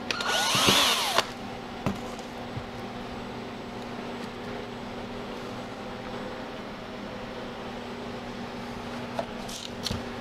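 Cordless drill with a long bit spinning up for about a second, its motor whine rising and falling as it bores a hole into a frozen block of food for a thermometer probe. After that only a steady low hum and a few light knocks remain.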